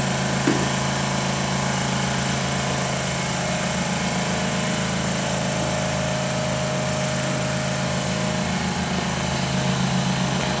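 Small gasoline engine running steadily at an even speed, a constant hum with no change in pitch.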